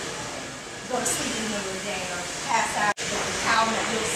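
Talking in a class over a steady background hiss, broken by a sudden brief dropout about three seconds in.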